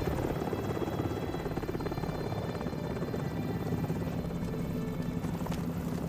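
Helicopter flying low overhead, its rotor blades making a rapid, steady chop.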